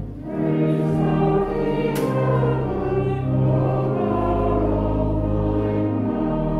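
Congregation singing a hymn to organ accompaniment, with long held notes over a low bass. There is a short break just after the start, as between lines, and a single click about two seconds in.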